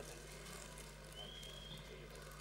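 A very quiet lull: a faint steady low hum, with a faint thin high tone for under a second about a second in.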